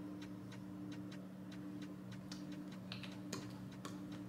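Faint, irregular small clicks, about three or four a second, from a doe-foot lip-colour wand being worked over the lips, over a steady low hum.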